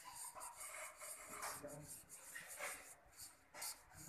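Faint rubbing of a felt-tip marker on paper in a run of short, irregular strokes as a coil of small loops is drawn.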